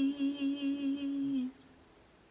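A woman's voice holding the final note of a song with vibrato, which cuts off about one and a half seconds in, leaving near silence.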